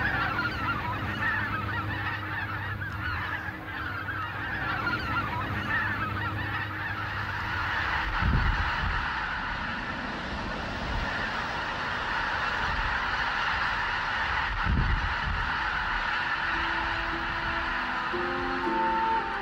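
A large flock of wild geese calling all together in a dense, continuous clamour of honks as the birds fly up and over. Two brief low rumbles come about halfway through and again later, and music begins to come in near the end.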